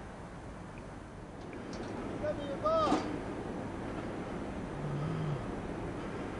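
A person's voice in short high calls about two and a half seconds in, then a brief low voiced sound around five seconds, over a steady background hiss.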